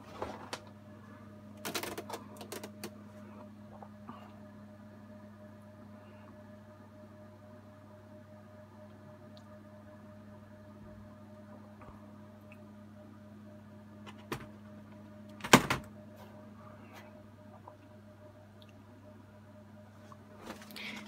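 HP ProLiant ML350p Gen8 server running through its BIOS start-up: a quiet, steady hum from its cooling fans with a few faint higher tones above it. A few light clicks come about two seconds in and again near fourteen seconds, and a sharp knock about fifteen seconds in is the loudest sound.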